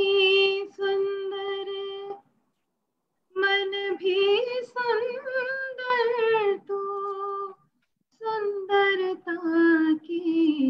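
A woman singing solo and unaccompanied over a video call, in long held notes with a wavering pitch, in three phrases broken by short silences.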